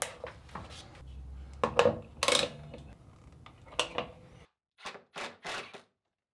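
Scattered clicks and knocks of PEX tubing and plastic plumbing fittings being handled and pushed into place, the loudest knock about two seconds in. In the last second and a half the sound cuts out, apart from a few faint clicks.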